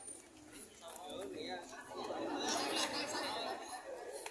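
Spectators chattering, several voices talking over one another, growing louder and busier in the second half.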